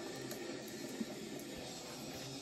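Faint steady room hiss with a single soft tick about a second in.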